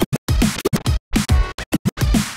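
Vinyl scratching on a DJ turntable and mixer: the record sound is chopped into many short, stuttering bursts by rapid cuts, with a brief full break about a second in.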